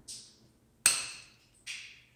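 Glass sight-glass tubing snapping at its scored line: a sharp crack a little under a second in, the loudest of three short clicks spread over about two seconds.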